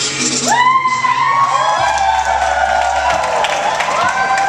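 A hip-hop track playing with a heavy bass, and the watching crowd whooping and cheering, several long rising whoops starting about half a second in.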